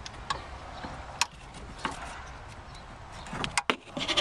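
Small plastic clicks and knocks from a speaker's white wiring connector being worked loose by pressing its locking tab. There are three single clicks spread over the first two seconds and a quick cluster of three near the end.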